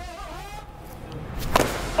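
A bat striking a pitched ball: one sharp crack about one and a half seconds in, over faint voices.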